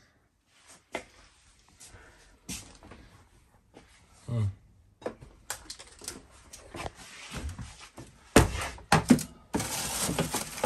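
Small-room handling sounds: scattered light clicks and taps, then two loud knocks near the end as a fridge's freezer door is opened and a metal baking pan is slid onto a freezer shelf, followed by clattering.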